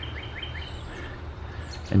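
A small bird singing a run of short, quickly repeated chirps, about six a second, that stops about half a second in, over a steady low rumble.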